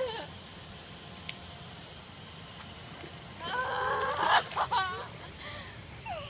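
A girl's high-pitched, wavering squeal lasting about a second and a half, starting about three and a half seconds in, over a steady low background hiss.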